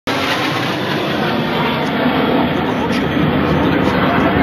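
Steady loud roar of a formation of jet aircraft flying low overhead.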